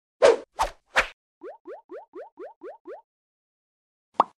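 Cartoon sound effects for an animated logo: three loud sharp pops, then a run of seven short rising chirps at about four a second that stop about three seconds in.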